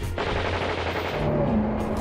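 Rapid automatic gunfire: a machine gun firing one continuous burst that starts just after the beginning.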